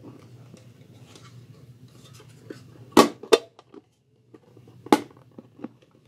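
Antique Preston mess kit's metal plate and skillet pressed together by hand into a closed, tight-fitting baker: soft handling rustle with sharp metal clicks, two close together about halfway through and one more near the end.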